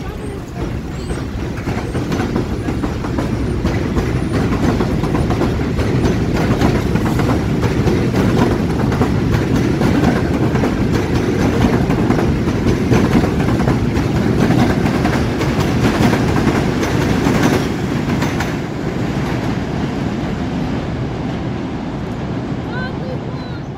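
New York City subway train of R62A cars running along a steel elevated viaduct: a loud, steady rumble with wheels clicking over the rail joints. It builds over the first few seconds and eases slightly after about 18 seconds.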